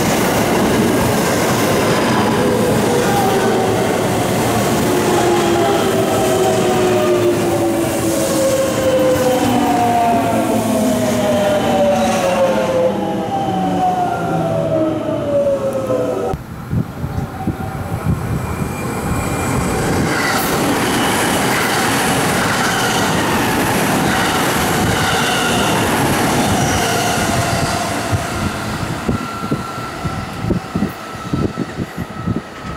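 Commuter electric train, a JR West 207 series, braking into the station: its motor and inverter whine falls steadily in pitch for about sixteen seconds over wheel and rail noise. The sound then changes abruptly to a rougher rail noise with no clear tone.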